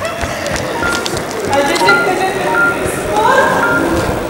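Music with a melody of short repeated high notes and rising phrases, with voices mixed under it.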